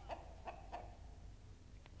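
A few faint, short clucks from hens kept in the apartment.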